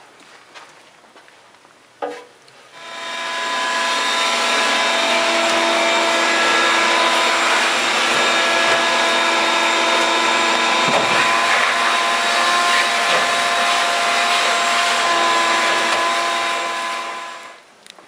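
Vacuum cleaner switched on with a click about two seconds in, spinning up to a loud steady whine, then switched off near the end and winding down, used to clean dust out of the furnace cabinet.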